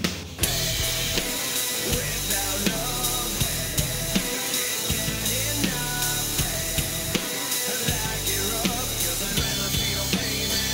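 Rock drum kit played hard along with a recorded rock song: bass drum, snare and cymbals keeping a steady beat under the song's guitars and vocals. After a brief break right at the start, the drums and band come back in together.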